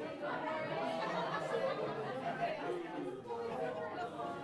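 Chatter of a group of people talking over one another, with several voices overlapping throughout.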